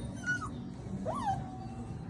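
Central Asian Shepherd puppies whimpering: two short, high whines, the second rising, then dropping and held briefly.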